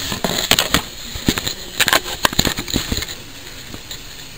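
Handling noise from a handheld camera being moved and reframed: a quick irregular run of sharp clicks and knocks over the first three seconds, then quieter.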